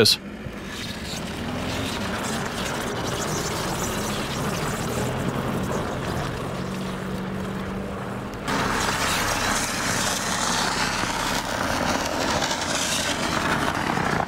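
A car driving over packed snow on tyres made of ice, the engine running under throttle with a steady rumble of the tyres on the snow. About two-thirds of the way in the sound jumps abruptly louder as the car is heard close up.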